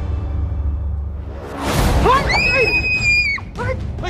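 Tense drama score with a low drone, then a sudden rush about a second and a half in, and a loud, high-pitched scream held for over a second, with a lower cry under it.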